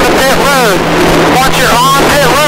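NASCAR stock car's V8 engine running at speed, heard loud from inside the cockpit, with a warbling rise and fall several times a second.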